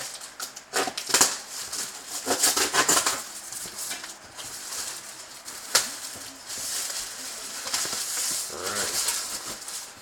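Cardboard flaps and plastic sheeting being pulled, scraped and crinkled by hand as a large shipping box is opened, with a sharp crack a little before six seconds in.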